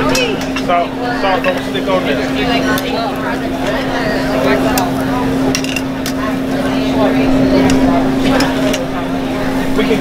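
Busy restaurant din: many overlapping voices over a steady low hum, with scattered clinks of plates and cutlery being set down on a granite counter.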